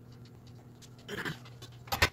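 A small pieces of a flat-pack play-kitchen kit are handled on a hardwood floor: a short rustle a little past the middle, then a sharp knock near the end as a small panel is set down on the boards. A steady low hum runs underneath.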